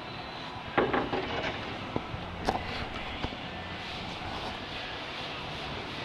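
Steady background hum with a few short knocks and handling noises from the fiberglass hood scoop being held and moved.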